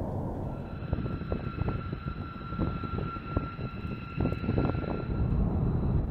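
B-2 Spirit stealth bomber taxiing, its four General Electric F118 turbofan engines making a low rumble under a steady high whine; the whine fades out shortly before the end.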